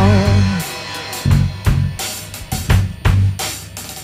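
Live indie rock band with electric guitars and drum kit. A held note ends about half a second in, then the music thins to a sparse break of separate drum hits with quieter guitar between them.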